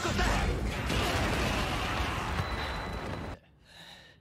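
Soundtrack of a tokusatsu action scene: a dense, noisy wash of sound effects with some voice beneath it. It cuts off abruptly about three seconds in and is followed by near silence.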